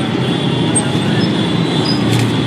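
Steady rumble of street traffic.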